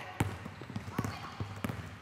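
Basketballs bouncing on a hardwood gym floor as players dribble: several separate, uneven thuds.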